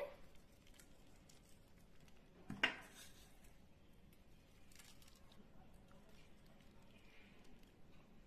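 Very quiet room tone with faint small handling sounds as salt and sev are sprinkled by hand over a plate of dahi puris, and one short sharp click about two and a half seconds in.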